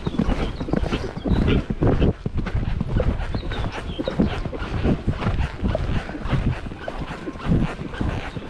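A grey horse moving on sand arena footing, heard from the saddle: its hoofbeats come as a dense, irregular run of dull thumps, along with the horse's breathing.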